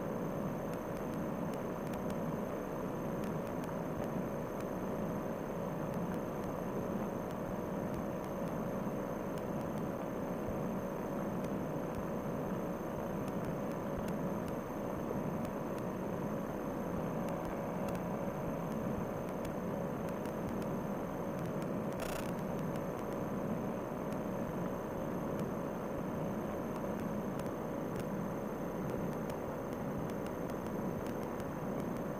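Fresh Breeze Monster paramotor's two-stroke engine and propeller running in flight, a steady, dull drone that holds one pitch. A single short click sounds about two-thirds of the way through.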